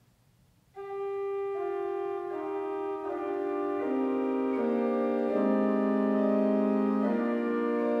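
Harris pipe organ playing on its Prestant 8', an open metal principal stop: after a brief silence, a single held note enters under a second in, and further voices join one by one into slow, sustained chords of a short improvisation.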